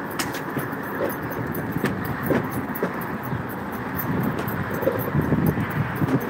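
Steady rolling noise of a dog-drawn wheeled rig moving along a concrete sidewalk, with street traffic and scattered light clicks.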